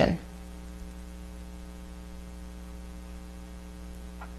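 Steady low electrical hum, with nothing else heard over it.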